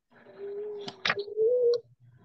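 A bird cooing: one drawn-out low coo that steps up in pitch and grows louder before it breaks off, with a couple of faint clicks about a second in.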